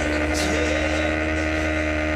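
Onboard sound of a motorcycle engine held at steady revs while leaned through a corner, under a constant rush of wind noise.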